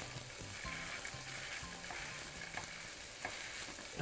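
Sea bream fillets frying skin-side down in a little oil in a nonstick pan: a soft, steady sizzle with small crackles and no spattering, the fillets being dry and oil-coated.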